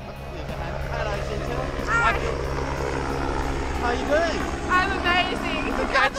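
A steady low mechanical drone, like a distant engine or rotor, that stops about five seconds in. Brief excited voices sound over it.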